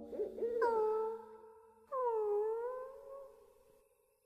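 Two drawn-out wordless moans from an animated mummy character lying on the ground. The first is held at an even pitch, and the second dips and then rises.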